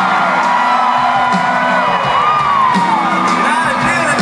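A live country band playing loudly in an arena, with a crowd cheering and whooping over the music.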